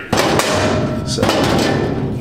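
Metal aerosol spray cans knocking and clattering against each other on a cabinet shelf as one is pulled out, loudest in the first second.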